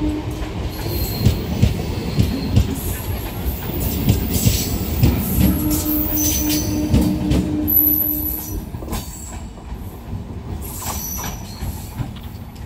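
Electric MEMU train coaches running past close by, with wheels knocking over rail joints, a pulsing hum and thin high wheel squeal. The sound drops away about nine seconds in.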